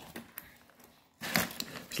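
Knife and fingers cutting and tearing apart roast rabbit on crumpled aluminium foil: a few faint clicks, then a short crackle about a second and a quarter in.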